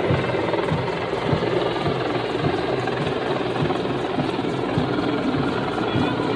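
Low-flying Hind-type (Mi-24/35 family) attack helicopter: steady rotor and turbine noise with an uneven low chop.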